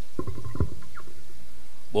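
Handheld microphone handling noise: a few low thumps and knocks, the sharpest about half a second in, as the microphone is picked up to speak.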